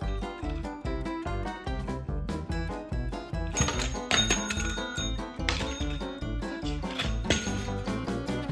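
Background music with a steady beat, over which a desk call bell rings several times in the second half, struck by a dog's paw.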